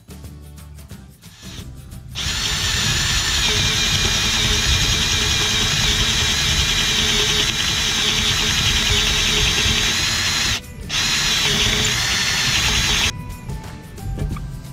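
Cordless drill boring a hole through a wooden board with a spade bit, running steadily with a whine for about eleven seconds. It starts about two seconds in, stops briefly about ten and a half seconds in, and cuts off about a second before the end.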